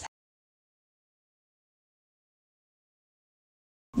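Dead silence: the sound track is completely blank.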